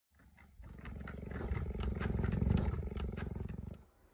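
A big cat's low, finely pulsing vocalisation that swells to its loudest about two and a half seconds in and cuts off suddenly just before the end, with sharp clicks over it.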